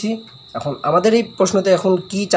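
A man talking, after a brief pause, with a faint steady high-pitched tone running underneath.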